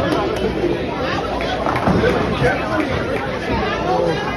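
Several people talking over one another, with a brief laugh near the end.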